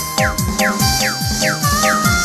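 Lampung orgen-style DJ dance remix with a heavy bass. A fast beat carries repeated falling pitch sweeps, about four a second, over held synth tones.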